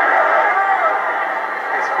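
Football stadium crowd noise: a steady din of many voices, with the narrow, dull sound of an old TV broadcast.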